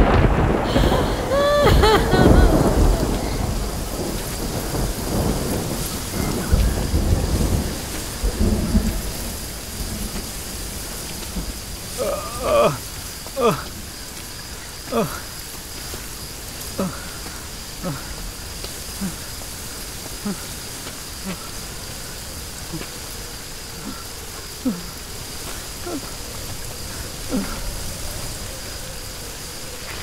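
Steady rain with thunder rumbling through the first several seconds. A woman's crying fades out in the first couple of seconds. Later a wounded man gives short pained groans and gasps every second or two.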